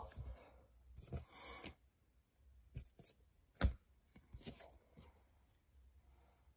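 Faint, scattered sliding and scraping of trading cards being handled on a table, with a few light taps and one sharper click about three and a half seconds in.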